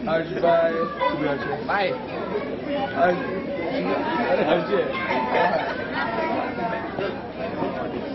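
A crowd of students chattering, many voices talking over one another at once.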